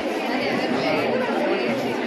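A crowd of people talking at once: overlapping chatter and voices in a busy hall.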